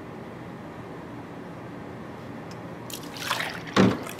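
Milk poured from a plastic jug into a measuring cup, faint and steady; about three seconds in the cupful is tipped into a plastic blender cup, a louder splash ending in a sharp thump just before the end.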